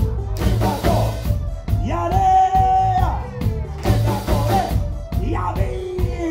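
Live pop band performing: male vocals singing long held notes over electric guitar, bass and a steady drum beat.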